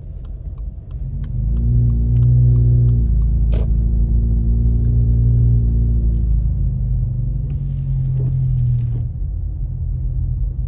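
Car engine and road rumble heard from inside the cabin while driving. About a second in, the engine tone rises as the car pulls away, holds steady, then eases off near the end. There is a single sharp click in the middle.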